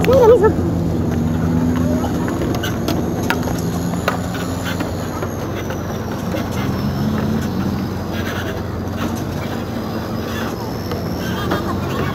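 River ferry's engine running steadily at the pier as passengers get off, with people talking over it and a voice briefly at the start.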